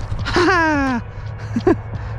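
A man's drawn-out exclamation, falling in pitch, then a short chuckle, as he catches a small FPV quadcopter in his hand.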